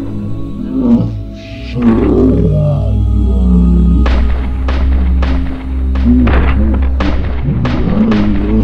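Rapid gunfire sound effects over dramatic music: a few single shots early on, then from about halfway through a fast, steady string of shots, about three a second.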